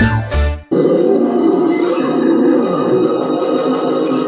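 A snatch of music cuts off under a second in, then a monster's long growling roar from a film clip takes over: the stop-motion Abominable Snow Monster roaring.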